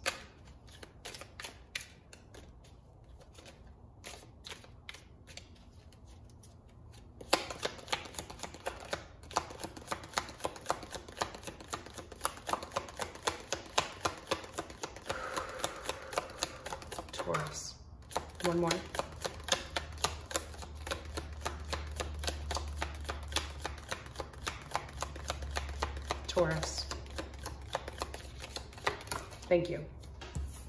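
A deck of round oracle cards being shuffled by hand: a long run of rapid soft clicks, sparse and quieter for the first several seconds, then dense and louder from about seven seconds in, with a brief break near the middle.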